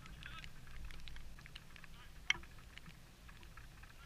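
Distant players' calls and shouts across an outdoor football pitch over a low steady rumble, with one sharp knock about two seconds in, a football being kicked.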